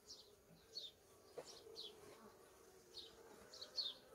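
Faint steady hum of honeybees swarming over an opened hive's frames, with several short, faint high-pitched chirps scattered through it.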